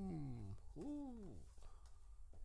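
A man's voice exclaiming "woo" in delight: the end of one drawn-out call falling in pitch, then a second, shorter "woo" about a second in that rises and falls.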